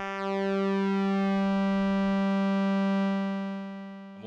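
Korg ARP 2600 FS synthesizer's oscillator 2 holding one buzzy pulse-wave note while its pulse width is swept, narrowing and opening for a phasing sound. The note fades away over the last second.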